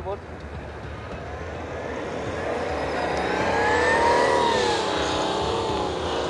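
Toyota Land Cruiser 300's engine revving up steadily over about three seconds and then easing off, as the SUV tries to drive forward while stuck in snow.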